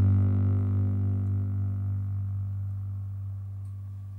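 Double bass holding a single low note that slowly fades away.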